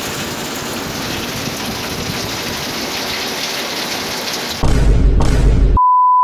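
Heavy rain pouring steadily. About four and a half seconds in, a sudden, louder burst of deep rumbling noise starts, and near the end it is cut off by a steady high-pitched test-tone beep.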